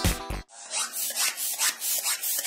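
Background music cuts off about half a second in. It gives way to quick, rhythmic rasping strokes of air from a floor-standing hand pump being worked.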